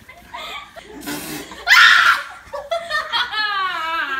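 Young women laughing in bursts, loudest about two seconds in, ending in a long wavering laugh that falls in pitch.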